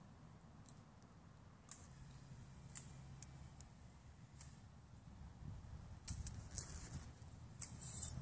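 Quiet background with a faint low hum, a few small isolated clicks, and denser small clicks and rustles from about six seconds in, typical of handling the leak detector unit and its strap.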